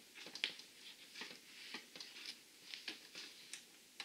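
A string of faint clicks and light scrapes from a Sony a6000 mirrorless camera body being fitted and turned onto a T-ring adapter in a telescope's focuser.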